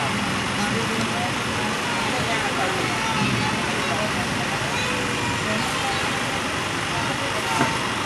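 Steady rushing noise inside an Indian railway sleeper carriage, with people talking in the background.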